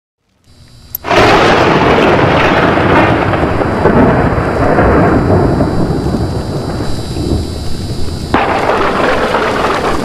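Loud thunder sound effect, a dense rumble with a rain-like hiss, bursting in abruptly about a second in and building again with a fresh crash about eight seconds in.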